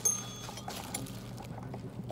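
Faint clicks and crinkles of a clear plastic package being handled, over a low steady hum.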